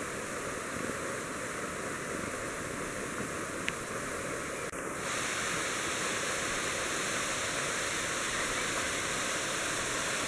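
Small waterfall pouring down a rock face: a steady rush of falling and splashing water, a little louder from about halfway.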